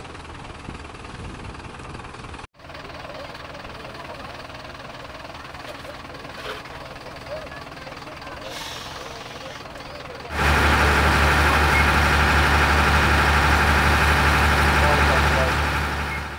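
Quayside background with distant voices. About ten seconds in, a cut brings in a loud, steady diesel engine running, a fire engine's, which tails off at the very end.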